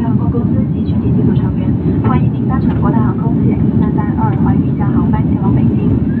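Jet airliner cabin noise during the climb: a steady low rumble of engines and airflow with no letting up.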